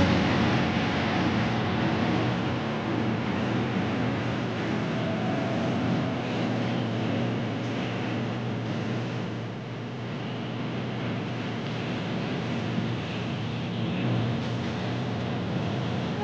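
A steady rushing noise of outdoor ambience, with no clear events in it.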